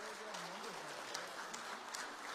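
Audience applauding, steady and fairly soft, with a faint voice underneath.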